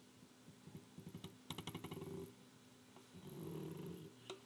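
A 1930s folding camera being handled and cleaned. About a second in comes a quick run of small, rapid clicks lasting about a second. Near the end there is a softer, steadier sound.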